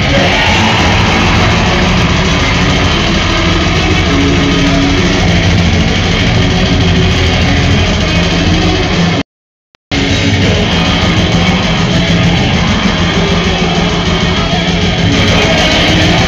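A metal band playing live and loud, with heavy guitars and a dense low end, heard from the audience in a club. The sound cuts out completely for under a second about nine seconds in, then comes back at full level.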